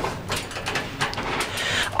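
Several light clicks and knocks from the elevator's door-close push button being pressed on the ThyssenKrupp Aurora car operating panel, with a short hiss near the end.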